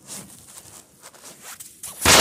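A run of short, soft scraping rustles close to the microphone: cloth and hand handling noise as the phone is carried and swung about.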